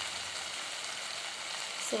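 Shredded cabbage, capsicum and tomato sizzling steadily in hot oil in a nonstick kadhai.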